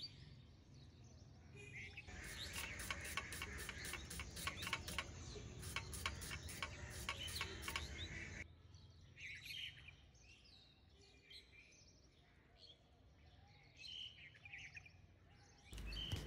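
Shallots being sliced against the steel blade of a boti, a run of faint, quick, crisp cuts for several seconds that stops about halfway through. After it, faint scattered bird chirps.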